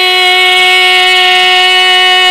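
Female Carnatic vocalist holding one long, steady note without ornament in a kriti in raga Kalyani.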